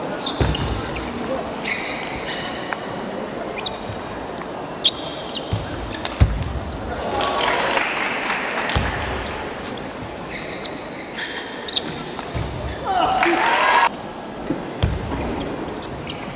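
Table tennis rallies: the ball clicking sharply off bats and table again and again, with shoes squeaking on the court floor. A player's shout rings out about thirteen seconds in.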